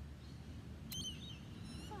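Steady low outdoor background rumble, with a short sharp bird call about a second in and a few faint high chirps near the end.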